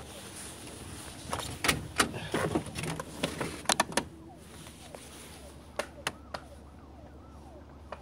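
A run of sharp clicks and knocks in three short clusters, like switch and handling clicks, over a low steady hum, with faint rising-and-falling squeaks in the last couple of seconds.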